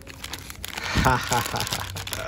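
Thin plastic wrapping crinkling as a connecting rod in its plastic sleeve is lifted out of its box and handled.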